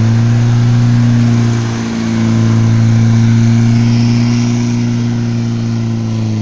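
Lada VAZ 2101 with a swapped-in Niva 1.7 four-cylinder engine, held at steady high revs while its rear wheels spin on wet grass in a drift. The revs dip briefly about two seconds in, then come back up. The welded rear differential makes both rear wheels spin together.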